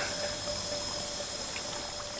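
Steady rush of a shallow stream with a constant, high, thin insect drone over it.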